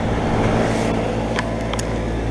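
A 2004 two-ton Comfort Range heat pump outdoor unit running steadily in heat mode after a defrost cycle: the compressor's low hum under the outdoor fan's even rush.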